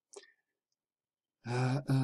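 A pause in a man's speech: a short, faint breath just after he stops, then near silence, and his talking resumes about one and a half seconds in.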